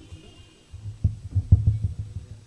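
A few irregular low thumps over a low rumble, with no speech.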